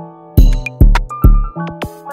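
Trap-style rap instrumental: a looping sampled keyboard melody, with drums and deep bass hits coming in about half a second in, three heavy bass hits in quick succession.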